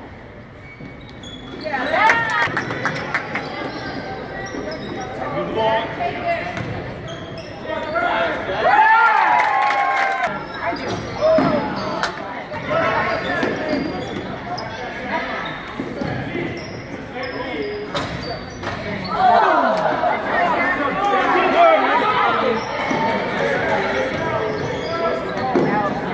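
A basketball bouncing and dribbling on a hardwood gym floor amid sneaker squeaks and the voices of players and spectators, all echoing in a large hall. The noise picks up sharply about two seconds in, when play resumes.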